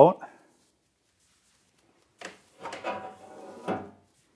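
Sheet-metal crumb tray of a desktop CO2 laser cutter sliding in its slot: a knock about two seconds in, then a second of scraping slide that ends in a knock near the end.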